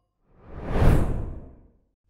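A single whoosh sound effect for an edit transition, swelling up to a peak about a second in and then fading away.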